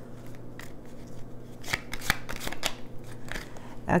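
Tarot cards being shuffled and handled: a run of quick, papery card flicks and snaps, busiest around the middle.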